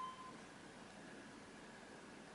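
An Otis hydraulic elevator's hall signal gives one short electronic beep right at the start, against faint background hiss.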